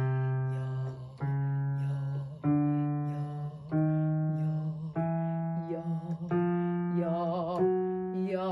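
A woman singing sustained "yah" notes low in her chest voice, from about C3 up to G3. Each note is held about a second and a quarter before stepping up to the next, and the later notes carry a slight vibrato.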